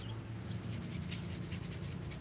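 Bristle brush scrubbing thinned oil paint onto a canvas in a quick run of short, scratchy strokes, with a brief pause just at the start. A steady low hum of lawn mowers runs underneath.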